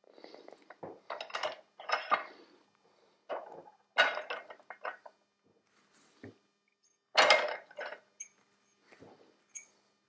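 Irregular metallic clinks and clatters of small brushless-motor parts as the old ball bearings are pressed out of the stator with a hand arbor press and the parts are handled on the bench. The loudest clatter comes about seven seconds in.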